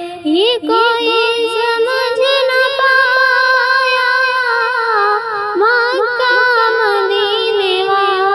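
A single high voice singing a naat, holding long notes with ornamented turns and pitch glides, with a brief break about half a second in.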